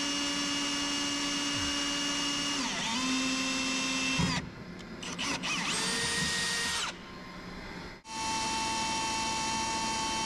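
Cordless drill running under load while drilling holes through steel bumper plate. Its motor whine holds steady but shifts pitch several times, with brief breaks about four and eight seconds in.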